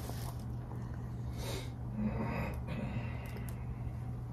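Quiet room with a steady low hum and a few faint breathy puffs, as from breath through the mouth while song lyrics are mouthed without voice.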